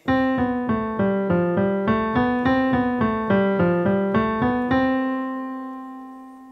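Yamaha N1X hybrid digital piano played with the left hand: a five-finger scale from middle C down through B, A, G to F and back up, one note at a time, joined smoothly at about four notes a second. The run goes through twice and ends on a held middle C that slowly fades.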